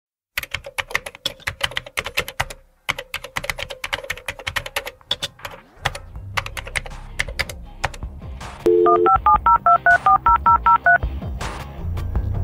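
Rapid computer-keyboard typing for about five seconds, then a low bass music bed comes in. Near the end a brief steady two-note telephone tone sounds, followed by a quick run of about a dozen touch-tone (DTMF) beeps as a number is dialled: a sound-effect podcast intro.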